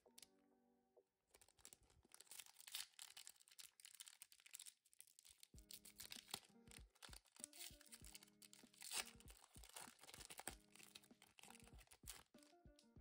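Foil wrapper of a Pokémon TCG booster pack crinkling and tearing open in the hands, a dense run of short crackles starting about a second and a half in. Faint background music plays underneath.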